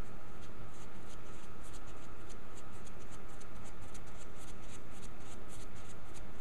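Flat paintbrush stroking acrylic paint onto stretched canvas: a quick run of short brush strokes, several a second, over a steady background hiss.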